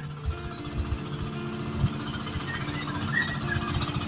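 A small engine running steadily, with a low, even hum, and scattered low knocks from wind or handling on the microphone.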